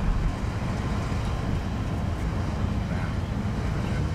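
Freight train of autorack cars rolling past, a steady low rumble heard from inside a car.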